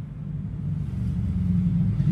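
A low steady hum or rumble with a few held low tones, growing slowly louder.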